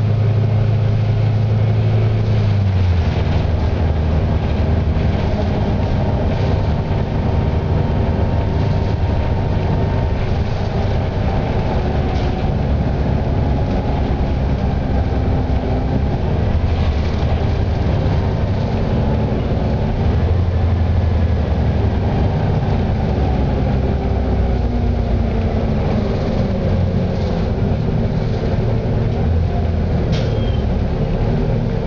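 Interior of a 2007 Eldorado National EZ Rider II transit bus under way: its Cummins B Gas Plus natural-gas engine runs steadily beneath a rumble of road noise and cabin rattles. The engine's low note drops about two to three seconds in.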